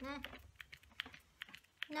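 Plastic pump of a nearly empty spray bottle of shimmer ink being pressed again and again, giving quick separate clicks about four a second with little or no spray: the bottle is almost used up.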